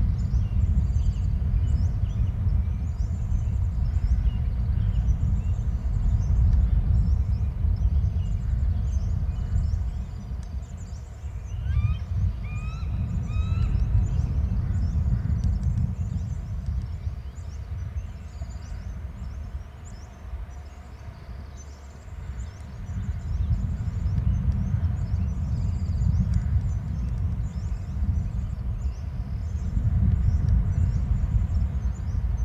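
Wind buffeting an outdoor microphone, a gusting low rumble that rises and falls. About twelve seconds in, a bird gives a short series of about four rising chirped call notes.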